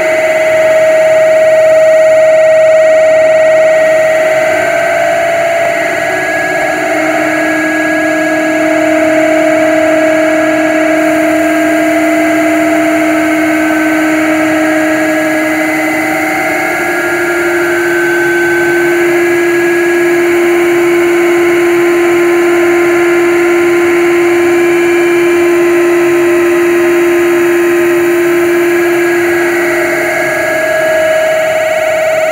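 Harsh noise and power-electronics music: a loud, dense wall of distorted noise with long droning tones held under it. The lower drone steps up slightly in pitch about halfway through.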